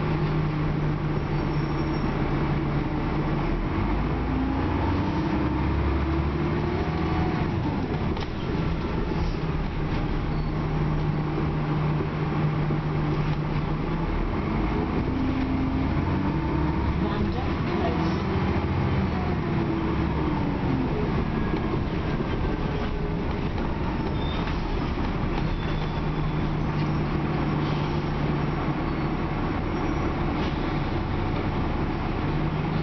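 Dennis Trident double-decker bus heard from inside the passenger saloon. Its diesel engine idles with a steady low hum, then pulls away with the engine note rising and falling as it accelerates through the gears. It settles back to idle, pulls away again about fifteen seconds in, and is idling once more near the end.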